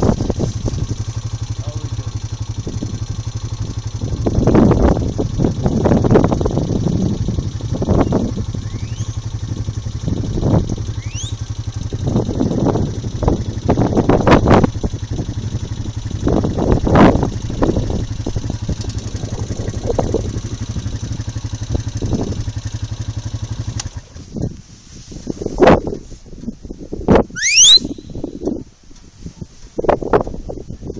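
A quad bike (ATV) engine running steadily at idle, then cutting off about three-quarters of the way through. Irregular loud rushes of noise come and go over it, and a few short rising whistles sound, two of them near the end.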